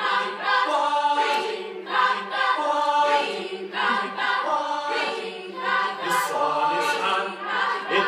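A group of young voices singing a cappella in close harmony, held chords moving in phrases of a second or two.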